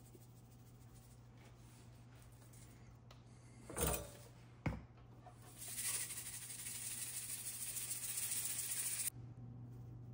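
Kosher salt poured from a canister onto a rack of raw baby back ribs: a steady hiss of falling grains for about three and a half seconds that stops abruptly. Before it come a thump and a sharp click from handling the containers, over a low steady hum.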